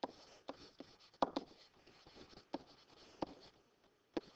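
Stylus writing on a digital pen surface: a run of irregular light taps and short scratchy strokes as a handwritten phrase is penned.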